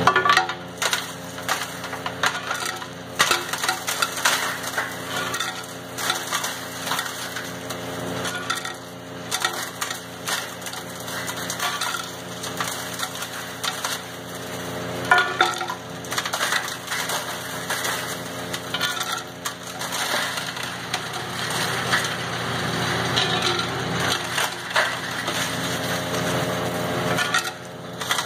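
Chunks of rotted quartz ore dropped by hand into the hopper of a running Mount Baker hammer mill, making irregular sharp knocks as they are crushed, over the steady running hum of the machinery.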